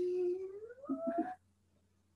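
A domestic cat meowing: one long, drawn-out meow that rises in pitch and breaks off about a second and a half in.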